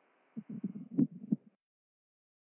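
A few muffled low thumps and knocks for about a second, then the sound cuts off suddenly to dead silence as the live stream's audio is paused.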